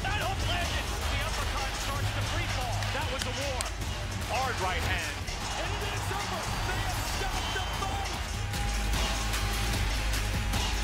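Music with a steady heavy bass, with voices over it.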